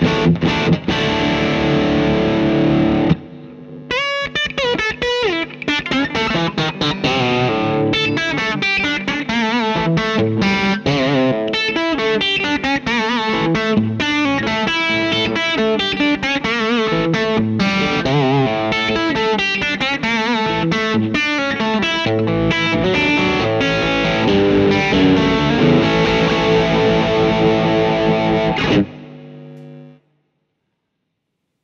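Electric guitar, a Fender Telecaster played through overdrive: sustained chords for about three seconds, a brief dip, then fast single-note lead runs with string bends, stopping suddenly about a second before the end.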